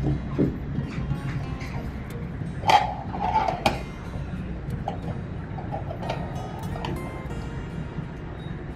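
Background music with a steady low bass, and two sharp plastic clicks about three seconds in as the water flosser's handle is handled.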